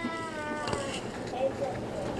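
Faint children's voices. One high, drawn-out call falls in pitch at the start, and scattered quieter voices follow.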